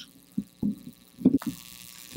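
Steady electrical hum from the podium microphone's sound system during a pause in speech, with a few soft low thumps in the first second and a brief hiss near the end.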